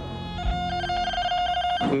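Metal detector giving a steady electronic tone for over a second, signalling metal beneath its search coil.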